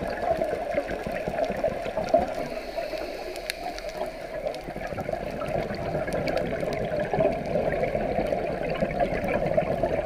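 Underwater noise on a scuba dive: a steady, muffled rush of water with scattered faint clicks.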